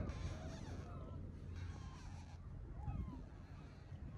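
Faint outdoor ambience: a steady low rumble with a few short, distant bird calls, arching up and down in pitch, scattered through it.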